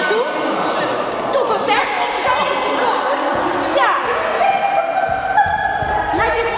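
Indistinct voices of several people talking at once, echoing in a large sports hall.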